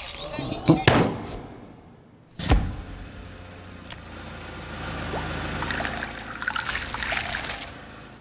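Sound effects of small objects handled on a tabletop: a few sharp knocks and taps, then a toy car rolling with a low rumble. Near the end comes liquid pouring into a glass.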